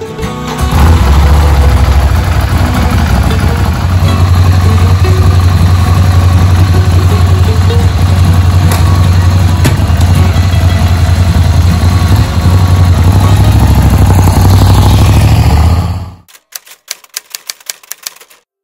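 Ducati Scrambler's L-twin engine starting about a second in and running loudly and steadily, then cutting off abruptly near the end. A quick run of rapid clicks follows.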